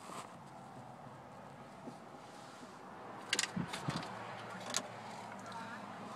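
Quiet vehicle-cabin background with a low steady hum, and a few short clicks and knocks from the phone being handled and moved, bunched between about three and five seconds in.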